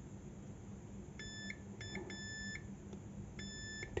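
Digital multimeter in continuity (buzzer) mode beeping four times, two short beeps then two longer ones, as the probes touch keypad contacts. Each beep signals continuity between the probed contact and its track or jumper.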